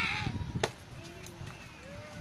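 A short shout, then about half a second in a single sharp pop of a pitched baseball smacking into the catcher's leather mitt. Faint voices follow.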